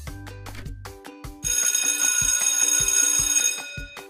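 Alarm-clock ringing sound effect marking the end of a countdown timer, a bright bell ring lasting about two seconds, starting about a second and a half in, over light plucked background music.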